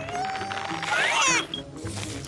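Cartoon background music with a held, slightly rising tone over the first second, then a quick rising zip sound effect about a second in.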